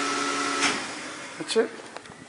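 Elevator machinery running with a steady motor hum and whine, which cuts off a little over half a second in as the car stops. A single knock follows about a second later.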